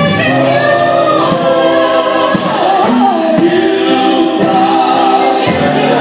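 Live gospel singing: a small group of male and female voices singing together through microphones, with drums and cymbals keeping the beat.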